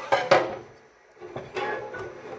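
Two sharp metallic knocks in quick succession, then a shorter clatter with a faint ringing edge about a second and a half in, as the abrasive cut-off saw and the steel clamped in it are handled.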